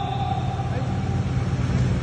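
Steady low rumble of motor-vehicle engines with road noise, holding level without a break.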